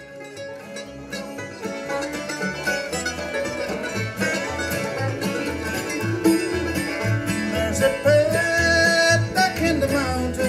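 Bluegrass band playing an instrumental introduction, with banjo and guitar over a steady, regular bass beat, fading up over the first few seconds.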